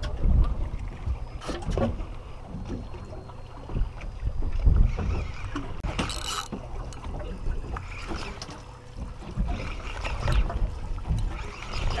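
Wind rumbling and buffeting on the microphone over boat and water noise at sea, with a few sharp knocks from handling a spinning rod and reel.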